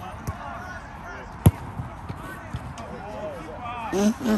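A football being kicked, with a light touch near the start and one hard strike about a second and a half in, the shot that scores. Players are shouting in the background, louder near the end.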